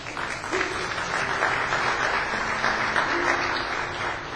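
Congregation applauding, easing slightly near the end.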